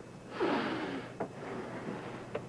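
A short breathy exhale about half a second in, followed by a few faint clicks of playing cards being drawn from a deck.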